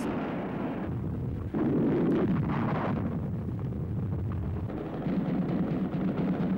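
Naval gunfire during a shore bombardment: a sudden loud boom about a second and a half in, within a continuous low rumble that swells again near the end.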